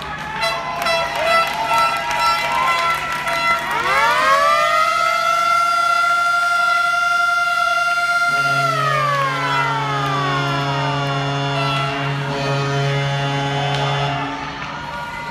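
After a few seconds of mixed tones and clicks, a siren winds up to a steady wail, holds it for about four seconds, then winds slowly down; a low steady drone sounds under the wind-down.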